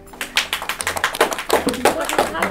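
A small group of people clapping by hand, starting a moment in, after a correct answer.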